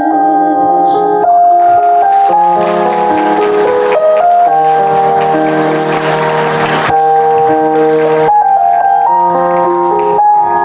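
Live instrumental music from a stage band: held keyboard chords changing every second or so, with a hissing cymbal-like wash from about a second in until about seven seconds in.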